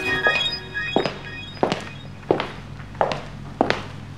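The music ends on a held chord that fades within the first half-second, then five single dull thuds follow at an even pace, about three every two seconds.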